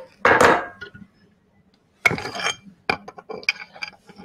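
A hacksaw set down on the bench among metal files, a metallic clatter about half a second in. Then a ringing metal clink and a few short clicks as the bench vice and the aluminium block in it are handled.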